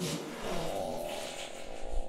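A long, exaggerated fart sound effect: noisy, with a low rumble that builds toward the end and cuts off suddenly.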